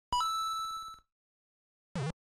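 A bright chime-like ding sound effect on an animated channel intro card. It opens with a brief lower note that steps up to a higher one, which rings for about a second; a short blip follows near the end.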